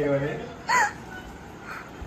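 A person's voice: talking that trails off, then one short, high-pitched squeak less than a second in.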